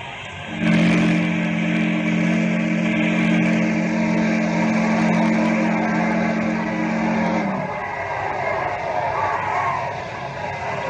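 Riverboat steam whistle sound effect: one long blast of a deep chime whistle, several low tones sounding together over a hiss of steam, starting about half a second in and cutting off after about seven seconds, leaving a fainter background.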